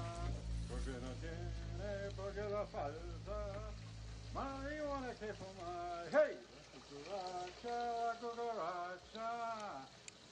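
A voice singing over soundtrack music, with long held and gliding notes. A low steady drone under it drops out about six seconds in.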